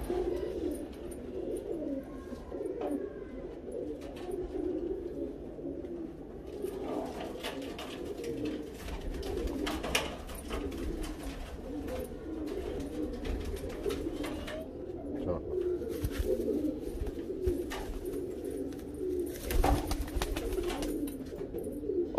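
Domestic pigeons cooing continuously in a loft, a low rolling coo that keeps going. Near the end, a short flurry of wingbeats as a pigeon flaps on its perch.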